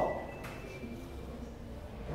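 Room tone in a pause between a man's sentences: a faint, steady low hum with nothing else distinct.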